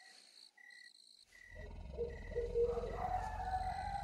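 Crickets chirping in a slow, even pulse of short high chirps. About a second and a half in, a low rumble and a long wavering tone come in beneath them.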